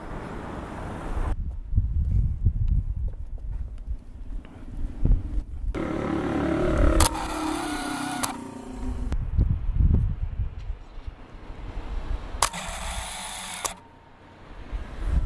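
Street sound on a wearable camera: wind gusting on the microphone, with traffic going by. Two louder passes come about six seconds in and near the end.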